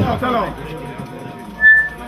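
A single short, high, steady whistle about a second and a half in, the loudest sound here, following a man's brief "ah" over a microphone.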